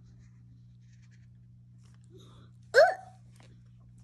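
A young child's single short, high-pitched vocal sound, rising in pitch, about three seconds in.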